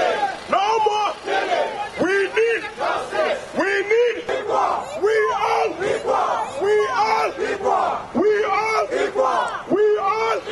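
Protest crowd shouting a chant over and over, about one call a second, with a man's voice leading through a handheld microphone and amplifier.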